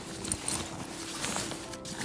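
Fabric diaper bag being handled as a pocket is pulled open, soft rustling and a few light ticks, over a faint steady tone.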